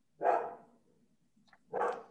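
A dog barking twice, about a second and a half apart, picked up over a participant's video-call microphone.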